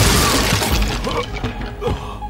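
Loud shattering crash of wooden floorboards breaking as a body slams onto the floor, dying away within about a second.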